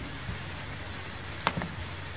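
Steady faint hiss of an open microphone in a small room, with one sharp click of a computer mouse about one and a half seconds in and a weaker click just after.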